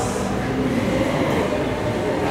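Steady low rumbling background din of a large hall, with a few faint held tones in it and no speech.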